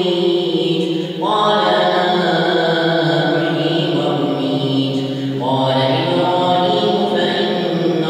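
One man's voice chanting in Arabic in the melodic style of prayer recitation, holding long drawn-out notes. New phrases begin about a second in and again at about five and a half seconds.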